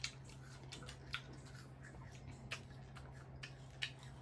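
Close-up eating sounds of fruit being chewed: a few sharp, wet clicks about once a second over a faint low hum.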